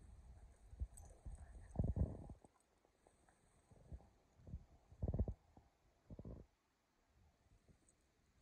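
Two dogs playing with a leafy elm branch: a few short, low, rough bursts of snuffling, jaw snaps and leaf rustle, the loudest about two seconds in and again around five and six seconds.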